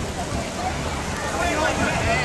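Indistinct voices chattering on an open ship's pool deck, mostly in the second half, over a steady low rumble of wind on the microphone.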